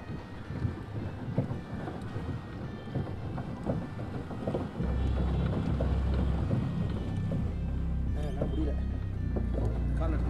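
Small boat's outboard motor running on a lake, with water noise; about halfway through its steady low hum becomes much louder and fuller.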